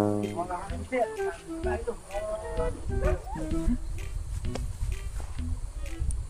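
A sustained brass chord fades out in the first half-second, then quiet background music plays under faint, broken-up voices.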